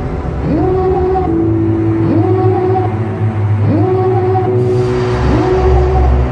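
Background music: a sliding synth note rises and holds, repeating about every second and a half (four times), over a steady low bass.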